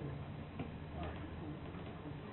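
A faint voice over a steady low room hum, with a few light clicks about half a second and one second in.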